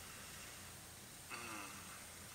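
Quiet room hiss, then about a second in a short, quiet "mm" hummed by a man with his mouth closed.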